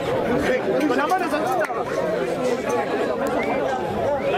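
Chatter of several people talking over one another at once, no single voice standing out.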